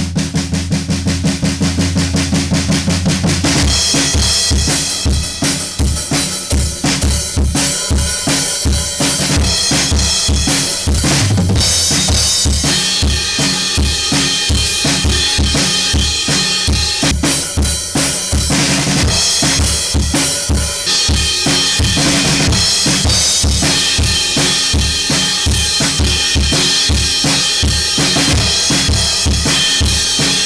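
Acoustic drum kit played live. It opens with a fast drum roll for about three and a half seconds, then settles into a steady beat of bass drum and snare under ringing cymbals.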